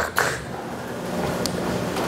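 Steady low background hum of the room, with a faint tick about a second and a half in.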